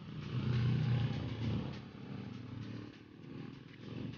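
A motor vehicle passing on the road, loudest about a second in and then fading.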